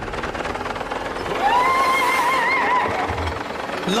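Cartoon sound effect of a flying Insecticon, a giant robotic insect, making a dense mechanical buzz. A wavering high tone rises over it for about a second and a half in the middle.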